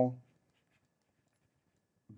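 A man's spoken word trailing off, then near silence with a few faint ticks and scratches of a stylus writing on a tablet screen.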